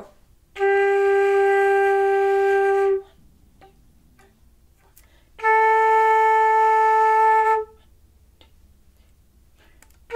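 Silver concert flute playing two long held notes, a G and then a higher B-flat, each about two and a half seconds, with a silence of about the same length after each: whole notes and whole rests in a beginner exercise.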